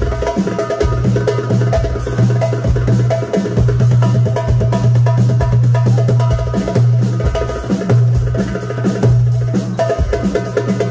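Darbuka (goblet drum) played fast with the fingers: a dense, rapid run of sharp high strokes on the drum head, mixed with deeper bass strokes, over a steady low bass tone that holds for seconds at a time and briefly drops out.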